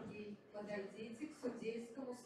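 Indistinct speech: a person talking, with no words made out.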